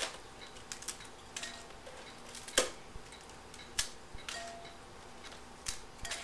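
A dry, dehydrated flaxseed cracker sheet being snapped into pieces by hand, with pieces dropped into a glass bowl: about seven short, crisp cracks and clicks at irregular intervals, the loudest a little before halfway.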